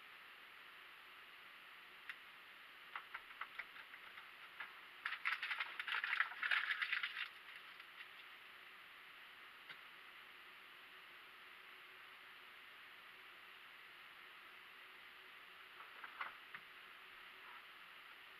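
Quiet background hiss with a few faint clicks, then about two seconds of rattling and rustling starting about five seconds in.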